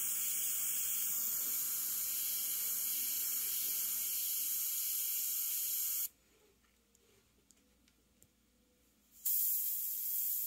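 Iwata CM-SB airbrush hissing steadily as it sprays paint. It stops suddenly about six seconds in and starts again about three seconds later.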